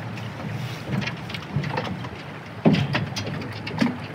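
Footsteps and knocks on an aluminum boat hull, a hollow metal deck, over a steady rushing background noise, with a few louder thuds in the second half.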